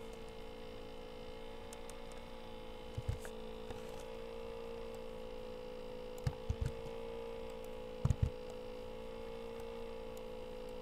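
Steady electrical hum in the recording, with a few soft clicks from working the computer: one about three seconds in, a few around six and a half seconds, and a quick pair near eight seconds.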